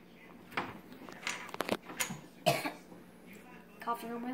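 Plastic LEGO pieces clicking and knocking as they are handled, with a quick run of small clicks about a second and a half in and a few louder short knocks around it.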